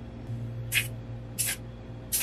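Aerosol can of Rust-Oleum gloss enamel spray paint giving two short hissing bursts, about three quarters of a second apart, over a steady low hum.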